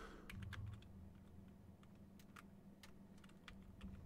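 Faint computer keyboard keystrokes, scattered separate taps as a short word is typed, over a low steady hum.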